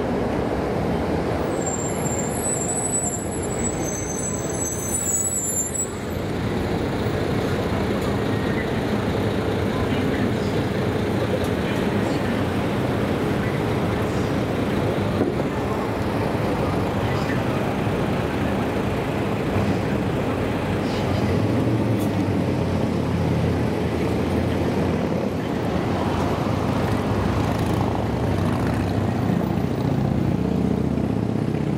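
City street traffic: a steady wash of cars and other vehicles on a busy road, with a brief high-pitched chirping a few seconds in.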